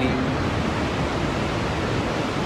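Steady, even rush of water from Niagara Falls, a continuous wash of noise with no breaks.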